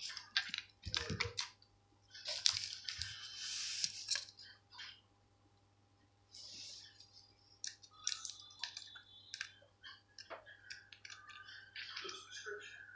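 Small plastic toy parts clicking and rattling faintly as they are handled and set down on a tabletop, with a couple of brief rustles.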